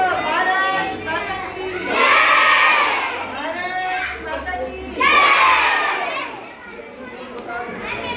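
A group of children shouting together twice, each shout about a second long and a few seconds apart, over the chatter of voices in a large hall.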